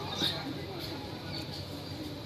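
Faint background chatter of people, with a brief high squeak about a quarter second in.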